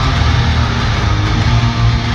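Electric guitar and electric bass playing a loud, driving instrumental punk rock piece over an arena PA, heard from the stands with the hall's boom and reverberation.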